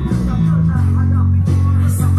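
Scorpion electric bass played fingerstyle over a pop song's backing track, with sustained low bass notes that change about half a second in.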